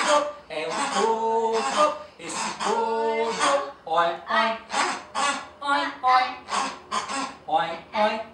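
Voices singing a children's song without accompaniment, with long held notes, then from about halfway short vocal sounds in an even rhythm, about two to three a second.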